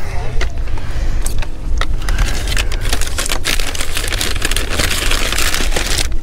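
Thin plastic grocery bags rustling and crinkling as they are handled, with scattered clicks and knocks. The crinkling grows louder in the second half, over a low rumble.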